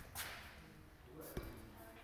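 Faint handling noise from a phone camera being swung about: a short swish just after the start and a single knock a little past the middle.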